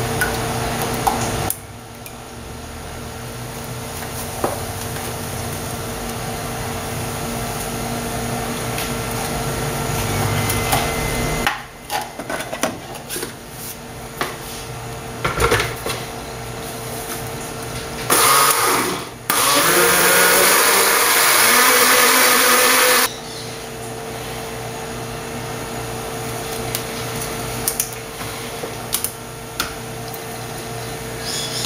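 A countertop electric blender runs, first in a short pulse and then steadily for about four seconds, blending cooled lemon-soda gelatin with table cream. Before it come knocks and clicks of the plastic jar being handled and seated on the base.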